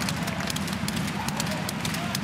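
Ice hockey arena sound: a steady crowd murmur under frequent, irregular sharp clicks and scrapes of sticks, skates and puck on the ice.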